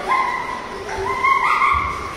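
German shepherd puppy giving two drawn-out, high-pitched vocal calls during play; the second steps up in pitch about halfway through.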